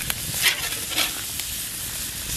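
Pork neck steak, bacon, potatoes and vegetables sizzling steadily on a hot plancha over an open fire. A few short clicks and scrapes of a metal utensil against the griddle plate break through the sizzle.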